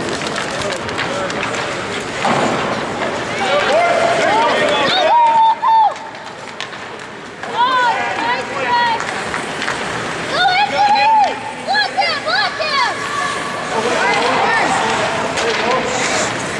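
Spectators at a youth ice hockey game shouting and calling out in long, held, high-pitched voices, the clearest about five seconds in and again around ten to eleven seconds, over a steady hiss of rink noise.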